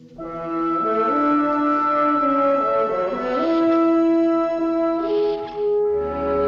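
Orchestral TV score led by brass, French horn among them, playing a slow phrase of held notes that climb in steps.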